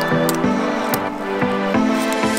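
Background music: a melody of short pitched notes changing every few tenths of a second over a steady accompaniment.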